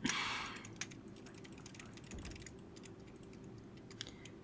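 Computer keyboard being typed on, quick irregular faint keystroke clicks as in fast gaming input, with a short louder hiss of noise at the very start.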